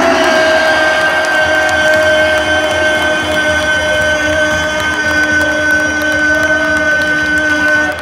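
Basketball arena horn sounding one long, steady blast of several tones over the noise of the crowd, marking the end of a period.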